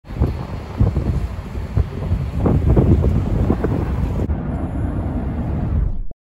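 Wind buffeting a phone microphone: loud, gusty rumbling that swells and drops irregularly.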